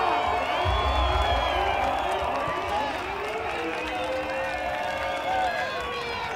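A large street crowd cheering and shouting, many voices at once, with a short low rumble about a second in.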